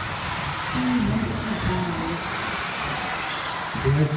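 RC four-wheel-drive buggies running on an indoor track: a steady wash of motor and tyre noise, echoing around a sports hall, with a voice and music faintly over it.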